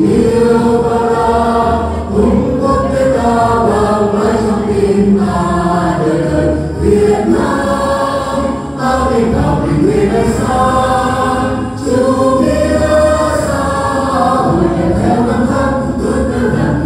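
A mixed group of men and women singing a Vietnamese song together into handheld microphones, continuous through the whole passage.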